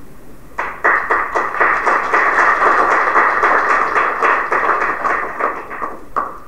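An audience applauding: a sustained ripple of many hands clapping that starts about half a second in and dies away near the end.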